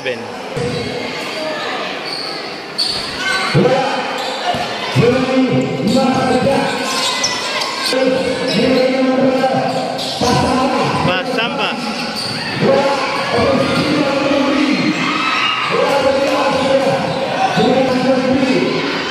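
A basketball bouncing on a concrete court, with sharp impacts every second or few that ring and echo under a large roofed court. Crowd voices and shouts go on underneath.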